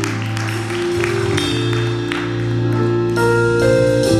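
Live southern gospel band playing the instrumental opening of a song: held keyboard chords that change every second or two, with light cymbal strikes over them.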